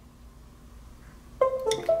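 Quiet room tone, then about one and a half seconds in a short two-note electronic chime, the "little beep beep" that signals the laptop has picked up the laser engraver over USB after it is switched on.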